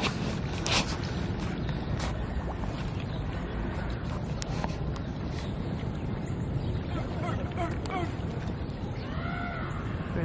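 Outdoor background with steady wind rumble on the microphone, a few clicks in the first two seconds, and faint distant voices near the end.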